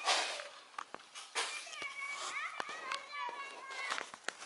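Children's voices calling and shouting, high-pitched and fairly faint, mixed with scattered sharp clicks and rustles, the loudest a noisy burst right at the start.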